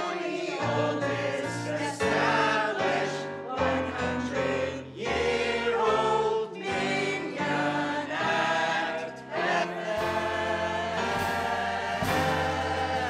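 A mixed chorus of men and women singing together in unison, with a small band accompanying on sustained low notes.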